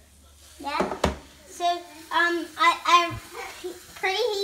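A child's voice vocalizing without clear words, with a sharp knock about a second in.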